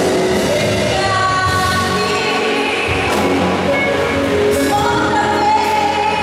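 A woman singing a slow gospel song into a microphone over instrumental accompaniment, holding long notes.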